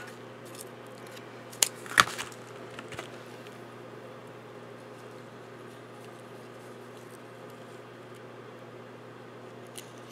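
Paper and craft tools handled on a tabletop: two sharp clicks about two seconds in and a few light ticks after, over a steady low hum.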